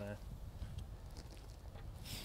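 Quiet outdoor background: a faint, steady low rumble with no distinct strike or impact. The first word is spoken just as it opens.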